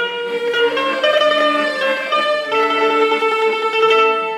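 A small ensemble of accordion and Chinese two-stringed fiddles (erhu) playing a Russian folk melody in held, changing notes.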